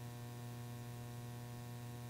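Steady low electrical mains hum with a ladder of evenly spaced higher overtones, unchanging.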